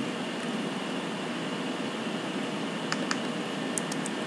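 Steady background hiss with a few faint computer-keyboard key clicks, a pair about three seconds in and another pair near the end, as a spreadsheet formula is edited.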